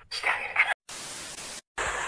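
TV static transition effect: a short, loud crackly burst, then an even hiss of white noise for under a second that cuts off abruptly.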